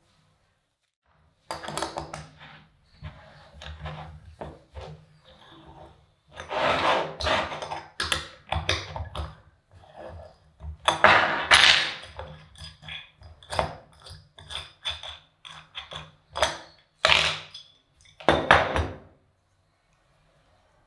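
A steel ring spanner working the nuts on the bolts of an aluminium press mould, with irregular metal clinks, scrapes and knocks as the nuts are loosened and the mould is handled and opened.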